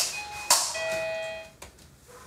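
Apartment doorbell rung: a click of the button, then a two-note electronic chime, a brief higher note followed by a longer lower one that fades out after about a second.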